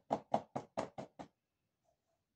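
Paintbrush knocking against the inside and rim of a small paint can as it is worked in the paint, a quick run of sharp knocks about five a second that stops a little over a second in.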